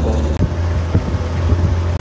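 Motorboat engine running with a steady low drone while under way on the water, with wind buffeting the microphone.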